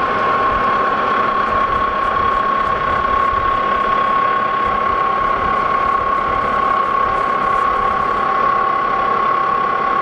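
Lodge & Shipley metal lathe running under power feed while single-point cutting a thread: steady gear-train running noise with a constant high whine.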